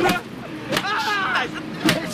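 Film soundtrack: men's raised, strained voices between three sharp impacts, over the steady hum of a truck running.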